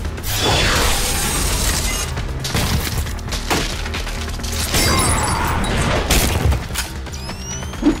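Cartoon sound effects of an electric shock crackling, from a power-draining collar clamped on Superboy, over a dramatic music score. There are several sharp hits, and a rising whine near the end.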